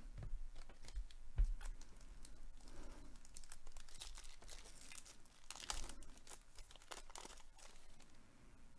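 Wrapper of a baseball card pack crinkling and tearing as it is opened by hand, with faint clicks as the cards are handled.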